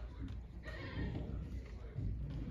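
A man laughing.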